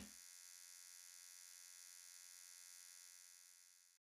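Near silence: a faint steady electrical hum and hiss, fading out near the end, with the tail of a loud hit dying away at the very start.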